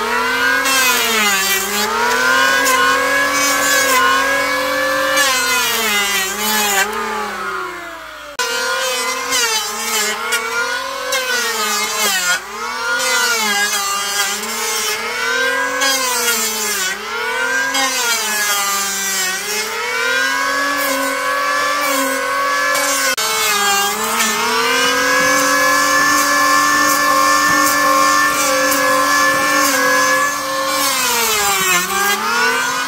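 Electric hand planer running and shaving a wooden board. Its motor whine sags in pitch as the blade bites on each pass and climbs back between passes, every second or two. It holds steadier and higher near the end.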